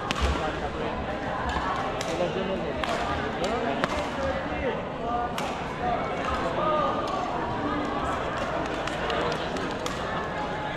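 Badminton rackets striking shuttlecocks across several courts, sharp pops at irregular intervals, over the chatter of many voices.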